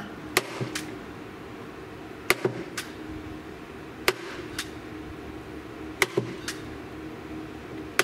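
Staple gun firing staples through carpet into a wooden box: four sharp shots about two seconds apart, each followed by a softer click about half a second later.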